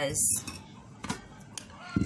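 A glass tumbler and a metal mesh kitchen strainer handled and set down on a cloth-covered table: a faint click about a second in and a single dull knock near the end as the strainer is placed over the glass.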